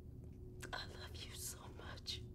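Soft whispered speech over a low, steady background hum.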